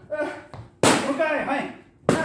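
Boxing gloves hitting focus mitts: a light hit at the start and a loud, sharp smack about a second in. A short shout follows each hit.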